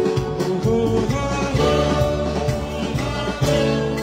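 Live amplified Sudanese band music: an electronic keyboard playing with a steady beat, and a male singer.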